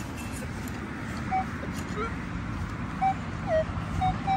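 Metal detector sounding a few short beeps as it is swept over the ground: one about a second in and another near three seconds in that drops in pitch, over a steady low rumble.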